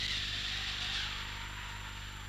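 Steady hiss with a low electrical hum on an old film soundtrack, with a faint tone that rises and falls in the first second.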